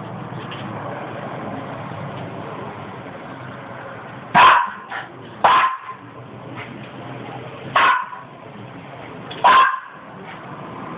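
Cairn terrier giving four short, loud barks at a patch of reflected light on the wall. The first comes about four seconds in, and the rest follow one to two seconds apart.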